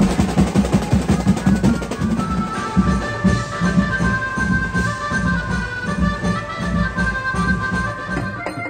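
Music: a fast, steady beat of drum strokes, with a high held melody coming in about three seconds in.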